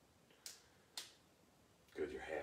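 Near silence: room tone broken by two short, faint clicks about half a second apart.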